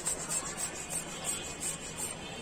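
Handheld plastic balloon pump worked back and forth in quick strokes, pushing air into a latex balloon. It makes a rhythmic rasping hiss several times a second.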